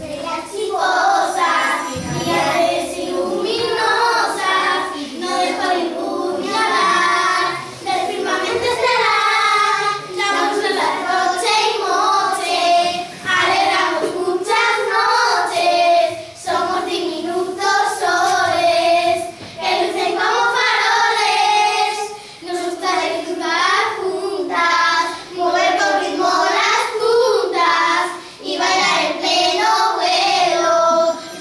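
A group of young children singing a song together in unison, phrase after phrase with short breaths between.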